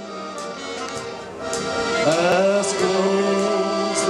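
Shanty-choir band playing an instrumental intro of held accordion chords. The music gets louder about two seconds in.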